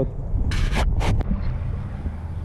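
A seasoning shaker shaken over raw fish fillets: two short rattling hisses, about half a second apart. A steady low rumble of wind on the microphone lies underneath.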